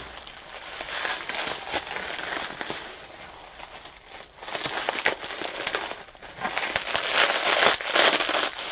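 Plastic bubble wrap being crinkled and pulled off a glass jar by hand, crackling in bursts with sharp pops of bubbles bursting. The crackle is loudest near the end.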